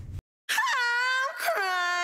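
Music starts after a brief gap of silence: a singing voice holds long notes, moving to a new pitch about a second and a half in.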